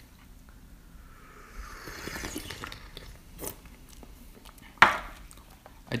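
Someone slurping a sip of ripe pu'erh tea from a small tasting cup, heard as a soft airy hiss that rises in pitch, followed by a few light clicks and a sharp knock about five seconds in.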